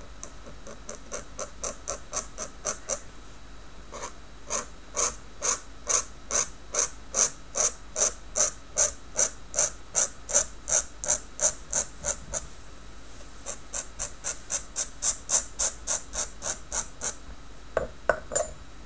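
Tachikawa Maru Pen dip nib scratching on Canson notebook paper in quick, rhythmic short strokes, about two to four a second, pausing briefly twice.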